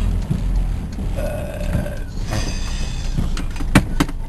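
Car engine and road noise heard from inside the cabin while driving, a steady low rumble. A brief held tone comes about a second in, and a sharp click just before the end.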